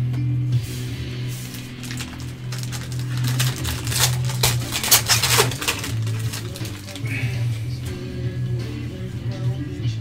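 Background music with a steady bass line runs throughout. From about three and a half seconds in, there is a run of sharp crackles for roughly two seconds as a foil trading-card pack wrapper is torn open and crinkled by hand.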